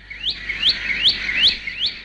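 A bulbul calling: a fast, even run of short rising chirps, about five a second.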